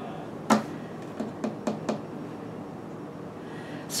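One sharp knock about half a second in, then four lighter taps over the next second and a half, from a buckeye and the parts of a mini drill press being handled on its metal table.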